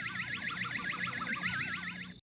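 Synthesized warbling sound effect on a 1990s TV commercial's soundtrack: several stacked tones wobbling rapidly up and down in pitch.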